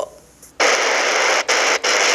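TEF6686 portable receiver switched off the FM station to the shortwave band, its speaker giving loud, even static hiss with no signal. The hiss starts about half a second in and breaks off briefly twice in the middle.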